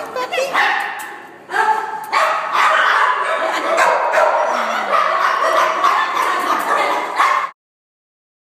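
Several dogs barking and yipping at once in a shelter kennel, a dense, overlapping din with a few higher whines among the barks. It cuts off suddenly near the end.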